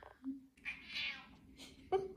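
A house cat meowing.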